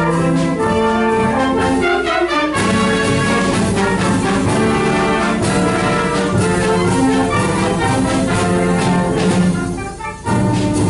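Symphonic wind band playing live, with trumpets and trombones prominent, sustained chords over a low bass line. The sound dips briefly just before the end, as at a break between phrases.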